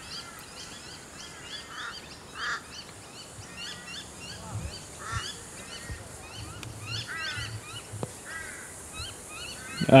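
Birds calling: a steady chatter of many short, repeated chirps, with louder harsh calls breaking in every second or two.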